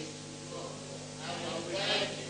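A congregation reading a Bible verse aloud together, faint and distant, over a steady electrical hum.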